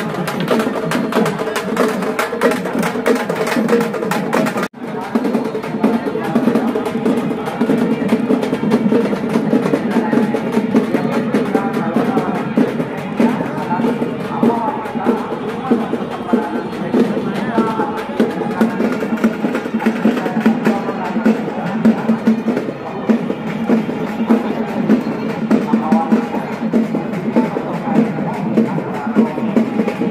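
Fast, continuous drumming from hand-beaten procession drums, with a crowd's voices mixed in. The sound breaks off for an instant about five seconds in and carries on.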